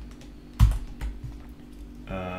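Computer keyboard keystrokes: one sharp keypress about half a second in and a softer one about a second in, between short pauses.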